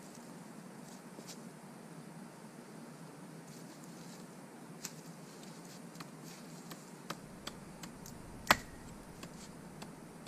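Hatchet chopping at wood on the ground: a few light knocks and ticks, then one sharp, loud chop about eight and a half seconds in.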